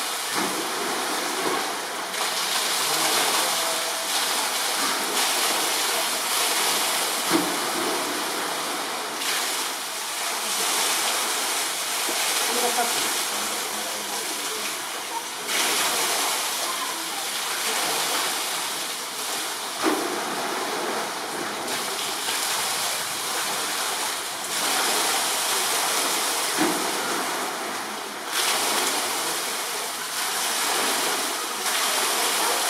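Steady rushing of running water in a polar bear enclosure's pool, with a few faint knocks and low background voices.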